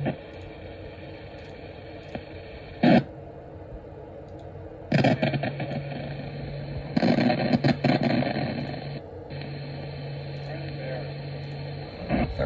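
A 2-meter FM signal heard through the radio's speaker, noisy and crunchy: steady hiss with a short loud burst about three seconds in, then snatches of garbled speech and hum from a weak, distant station.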